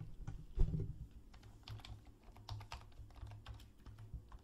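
Typing on a computer keyboard: a quiet run of light, irregularly spaced key clicks as a short name is typed in.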